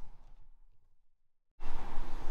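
Faint background noise dies away to dead silence, then a steady background noise with a low rumble cuts in abruptly about one and a half seconds in.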